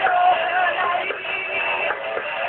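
Live heavy metal band performance: a female lead singer holds a sung note over electric guitars and drums.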